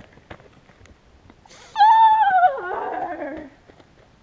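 A loud, high-pitched drawn-out vocal cry about two seconds in, held briefly and then sliding down in pitch and breaking up over about a second and a half.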